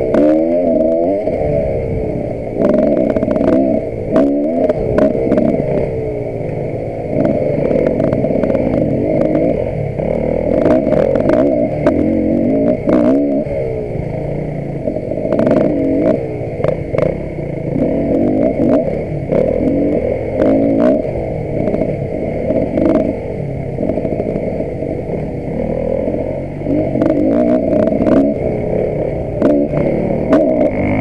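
Enduro dirt bike engine running under the rider, muffled, its pitch rising and falling over and over as the throttle is worked along a trail. Many short knocks and clatters from the bike going over rough ground run through it.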